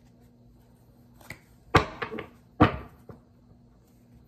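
Tarot cards striking a wooden desk: two sharp knocks a little under a second apart, with a few lighter taps around them.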